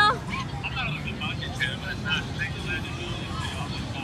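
Indistinct nearby voices over a steady low mechanical rumble, like an engine running.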